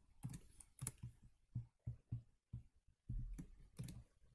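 Computer keyboard keys and mouse buttons clicking in an irregular scatter of short clicks, with a louder cluster near the end.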